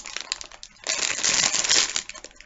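Plastic candy bag crinkling as it is handled and turned over. A few light crackles come first, then a denser crinkle of about a second in the second half.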